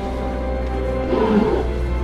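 Dark orchestral film score with held notes over a low drone. A deep, roar-like animal bellow rises and falls about a second in.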